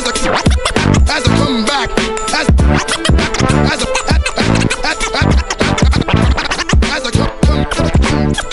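A DJ scratching a vinyl record on a turntable, cutting the sound in and out with the mixer, over a hip-hop beat. Many quick back-and-forth scratches sweep up and down in pitch in time with the beat.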